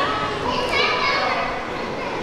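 Background chatter of onlookers, with children's voices talking and calling out.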